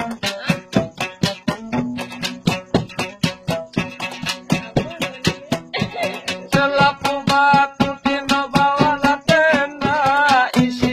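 Sasak gambus, a pear-shaped lute, played with quick, steady plucked notes over a sustained low drone. A man's voice comes in singing about six and a half seconds in.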